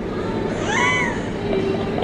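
A single short, high meow-like cry that rises and then falls in pitch, over steady low room noise.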